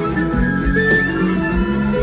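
Live rock band playing a fast harmonica solo, a quick run of notes over electric guitar, bass and a steady kick-drum beat.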